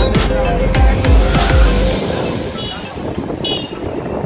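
Background music with a heavy bass beat cuts off about two seconds in. Street traffic noise from the moving ride follows, with two short, high-pitched vehicle horn toots.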